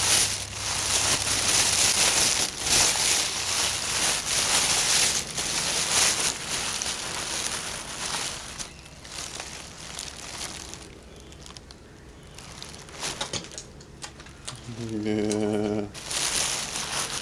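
Crinkling, crackling rustle full of small clicks, which dies away after about eight seconds. Near the end there is a short, low, wavering hum.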